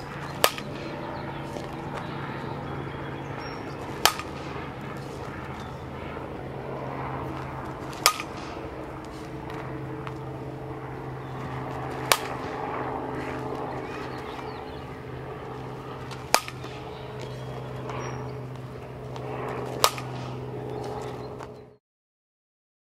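Fastpitch softball bat striking the ball, six sharp cracks about four seconds apart, over a steady low hum.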